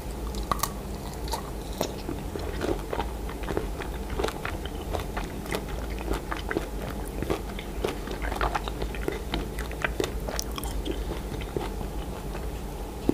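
Close-miked eating of a blue candy-coated strawberry: a bite right at the start, then steady chewing with many small crisp clicks and crunches from the coating.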